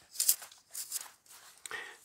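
Three short scraping, rustling handling noises as thin wire hinge pins are pushed back through the hinges of a stainless-steel folding camp stove.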